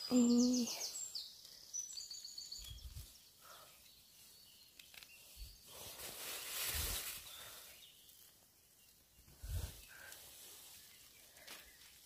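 Faint woodland sound: a bird sings briefly at the start, then there is soft rustling of leaves and twigs and a few low bumps of the phone being handled.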